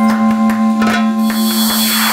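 Background music: a sustained chord with steady higher notes, and a noise sweep that swells over the last second.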